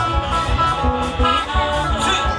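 Live band music through a PA: electric guitar and keyboard notes over bass and a steady drum beat.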